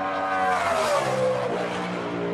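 NASCAR Cup car's V8 engine at full throttle passing the trackside microphone, its pitch falling as it goes by and then holding at a lower note.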